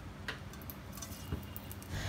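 Mustard seeds and urad dal landing in hot oil in a nonstick kadai: a faint sizzle with a few light ticks, over a low steady hum.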